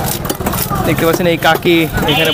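A hand-held perforated fish scaler scraping the scales off a large whole fish in short rasping strokes, with a voice speaking over it from a little under a second in.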